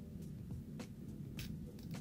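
Faint handling sounds of tweezers working the adhesive tape off a tape-in hair extension weft: a handful of soft, sharp clicks and crinkles over a low steady hum.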